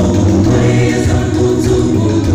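Choir singing a gospel song, loud and unbroken.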